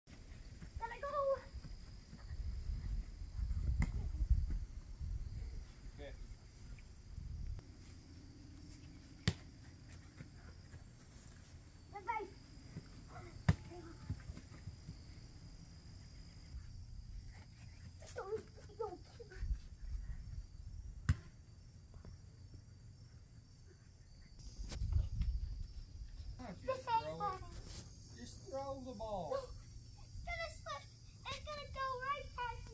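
Short stretches of voices, a child's among them, over a steady high insect chirring, with low rumbles on the microphone now and then and a few sharp clicks.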